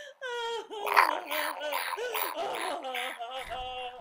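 A voice laughing in a long, high run of 'ha ha ha' cackles, one short syllable after another.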